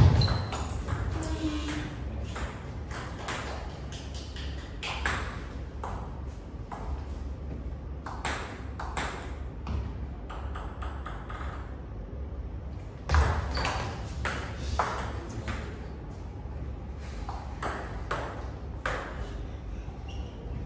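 Table tennis rallies: the ball clicks sharply off the bats and the table in quick runs of strokes, with pauses between points. A heavier thump comes about 13 seconds in.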